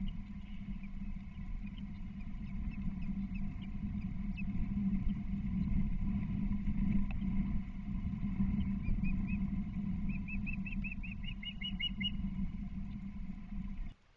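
Steady outdoor wind-and-water noise with a low hum on the nest-cam microphone. From about two-thirds of the way in, an osprey gives a rapid run of short, high chirps, about five a second, lasting a few seconds.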